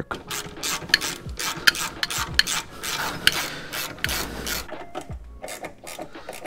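Hand ratchet clicking in short, irregular strokes, with metal scraping, as the steering rack's mounting bolts are run down but not torqued.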